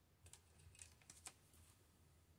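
Faint taps and clicks of fingers and fingernails on a smartphone touchscreen, several in quick succession during the first second and a half.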